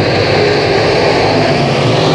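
A pack of dirt-track Sportsman late models with GM 602 crate V8 engines running hard together on a restart, their engines blending into one loud, steady drone.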